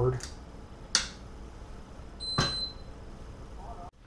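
A sharp click about a second in, then a short high electronic beep with a second click just after two seconds: the Tecan HydroFlex microplate washer's on-off switch being flipped and the instrument beeping as it powers up.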